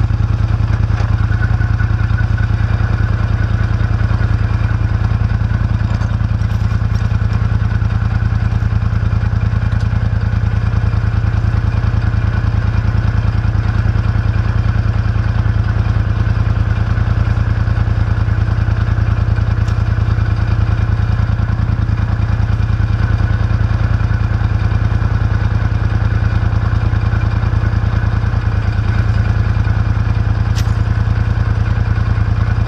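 Polaris Sportsman 850 XP ATV's twin-cylinder engine idling steadily.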